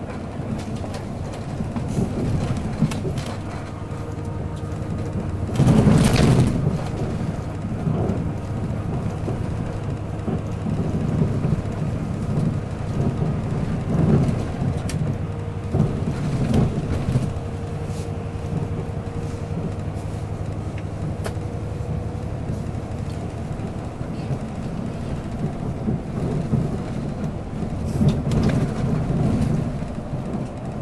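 Cabin noise inside a moving bus: a steady low engine and road rumble with scattered knocks and rattles. There is a louder burst of noise about six seconds in.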